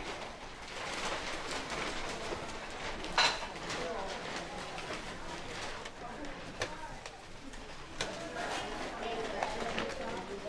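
Indistinct background chatter of several people in a busy room, with a few light knocks and clicks, the sharpest about three seconds in.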